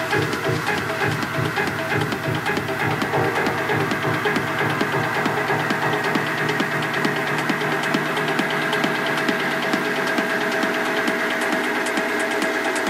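Techno track from a DJ mix: a steady four-on-the-floor kick at about two beats a second under held synth tones and fast hi-hat ticks. The low end thins out about two-thirds of the way through.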